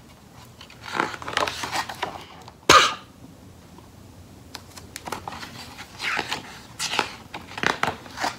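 Pages of a hardcover picture book being turned and handled, paper rustling in two spells, with a single sharp snap a little under three seconds in.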